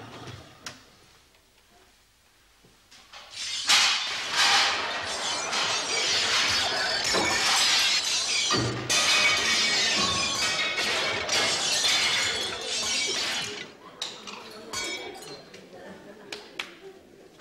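Crockery and glass crashing and smashing offstage: a long, loud clattering smash that starts a few seconds in and goes on for about ten seconds before dying away.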